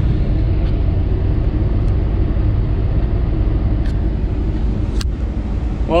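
Semi-truck's diesel engine running, heard from inside the cab as a steady low rumble, with a sharp click about five seconds in.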